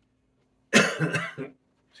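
A man coughing: a short fit of three or four quick coughs a little under a second in.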